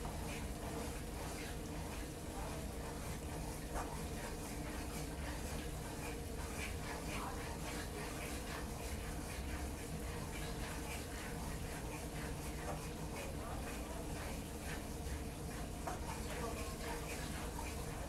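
A wooden spoon stirring and scraping a flour roux in a frying pan on a stove, in many small strokes over a steady low hum.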